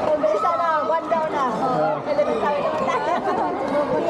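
Several people's voices talking over one another: lively chatter.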